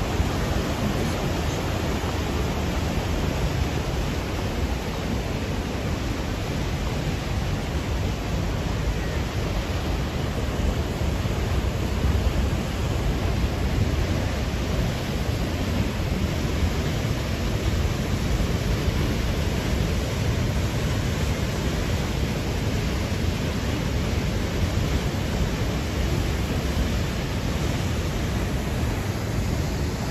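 Crescent Falls, a 27 m waterfall on the Bighorn River, pouring into its pool, with the river's rapids running close by: a steady, even rush of water.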